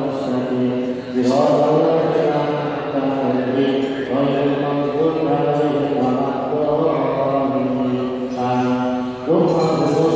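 A congregation chanting dhikr prayers together in unison, in long drawn-out phrases, with a new phrase starting about a second in and another, rising, near the end.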